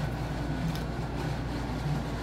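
Steady low background hum with a few faint, light clicks and rustles from handling at the table.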